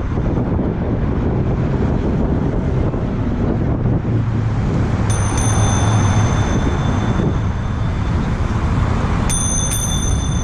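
A bicycle bell rings about halfway through, its high ring hanging on for a few seconds, then rings again near the end. Under it runs the steady wind and rolling noise of a bicycle being ridden.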